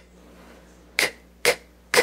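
A woman sounding out the hard letter C as short, breathy "k" sounds, three of them about half a second apart, the last the loudest.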